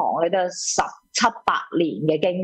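Speech only: a person talking, with a brief pause about a second in and a few crisp mouth clicks or consonant pops.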